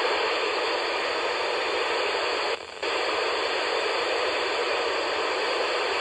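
Steady FM radio hiss from a Yaesu FT-817ND handheld receiving the SO-50 satellite's downlink, with a brief dip a little before halfway through. The satellite signal is nearly lost as the handheld antenna drifts off the satellite.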